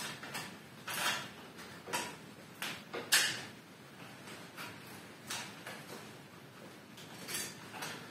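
Irregular short clicks and scrapes of metal bonsai wire being wrapped and tightened by hand around a pine branch, the loudest about three seconds in.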